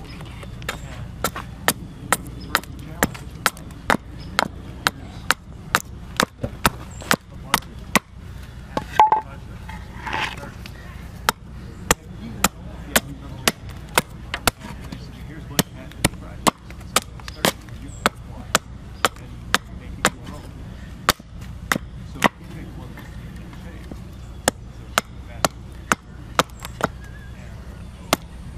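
Gränsfors carving hatchet chopping into a green walnut spoon blank held on a wooden chopping block: a steady run of sharp strikes, about two a second, with short pauses now and then.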